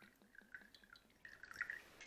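Vodka being poured from a glass bottle into a small shot glass: a faint trickle that grows a little louder in the second half.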